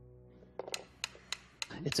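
Several mechanical pendulum metronomes ticking, started out of phase and not yet in step: a few sharp clicks at uneven spacing, roughly three a second, in the second half.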